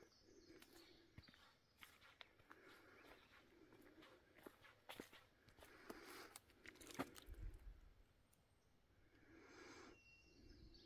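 Faint footsteps of a hiker walking a forest trail, crunching and snapping dry leaf litter and twigs in an irregular patter, with the loudest snap about seven seconds in.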